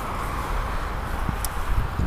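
Steady low rumble of wind on the microphone, with outdoor road-traffic noise behind it. A single faint click comes about one and a half seconds in.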